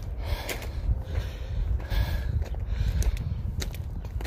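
Footsteps in sandals crunching up loose, rocky scree, a step about every half second, with heavy breathing from the climb. A steady low rumble sits under it on the microphone.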